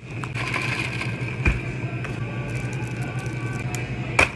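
A clear plastic lid is pressed and snapped onto a plastic cup of iced drink: light plastic clicks and crinkles, with one sharp snap about a second and a half in. A steady low hum runs underneath.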